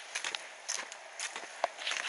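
Footsteps of someone walking along a paved footpath: a run of irregular scuffs and clicks over a steady hiss.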